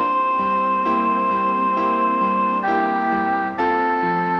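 Electronic home organ playing a slow ballad on an oboe solo voice over a simple automatic accompaniment. One high melody note is held for over two seconds, then the tune steps down and back up near the end, while the chords pulse gently and evenly beneath.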